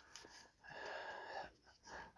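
A man's faint in-breath between phrases, lasting just under a second, with a slight wheeze to it.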